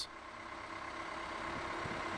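An engine running steadily at idle, faint and slowly getting louder.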